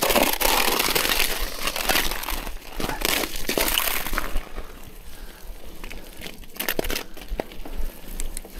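Wind buffeting an action camera's built-in microphone, which has no windscreen, along with bicycle tyres rolling over a muddy track. It is louder for about the first four seconds, then softer, with a few sharp clicks near the end.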